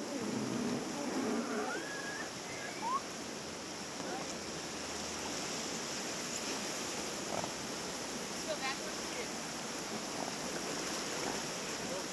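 Steady rush of river rapids around a whitewater raft, with brief voices near the start.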